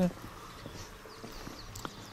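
Faint footsteps on pavement: a few light taps and scuffs spread through the moment, over quiet outdoor background.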